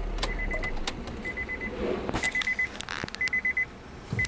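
Honda Fit Hybrid's cabin warning chime beeping: a quick run of four high pips, repeating about once a second, with a few sharp clicks between. A low steady hum stops about half a second in.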